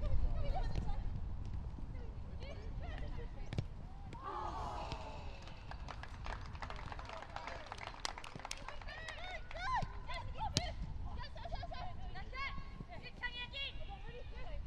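Pitch-side sound of a women's football match: players shout short, high calls to each other, with a few sharp knocks of the ball being kicked. A low rumble on the microphone is strongest at the start.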